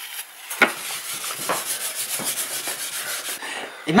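Quick back-and-forth rubbing on a small dry-erase slate, scratchy and steady for about three seconds, as the slate is wiped clean.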